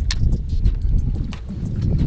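Wind rumbling on the microphone, with scattered light clicks and knocks from a baitcasting reel being cranked as a hooked bass is reeled up to the boat.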